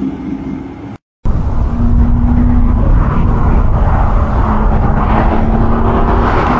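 BMW M2's turbocharged straight-six running at a steady pitch as the car drives toward the microphone, growing louder and brighter near the end. A brief silent gap about a second in breaks the sound.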